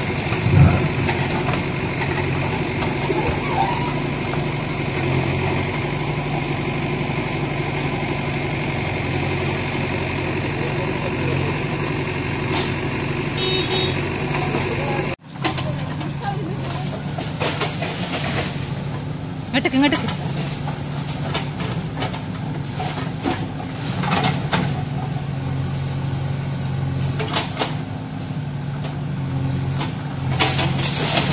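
A heavy engine running steadily, with a brief break in the sound about halfway through.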